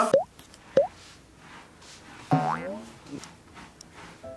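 Two quick rising 'boing' cartoon sound effects, then about halfway through a short pitched voice-like cry that bends up and down.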